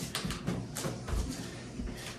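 Soft, irregular thuds and shuffling of hands and forearms landing on a yoga mat as a person switches between forearm and straight-arm plank.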